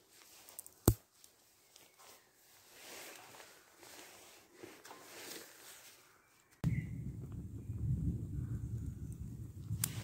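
Low rumble of distant thunder setting in abruptly about two-thirds of the way through and carrying on. Before it there is one sharp click about a second in and faint rustling while twigs are loaded into a wood stove.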